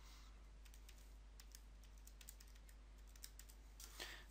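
Faint, irregular clicking of calculator keys being pressed, barely above near silence.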